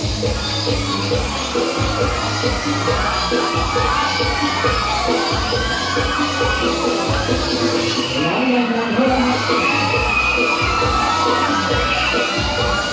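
Riders screaming and shouting together on a swinging gondola thrill ride, over loud music with a steady beat; the screams grow thicker in the last few seconds.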